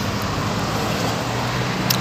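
Steady road-traffic noise, an even rush of passing vehicles with a low hum beneath it.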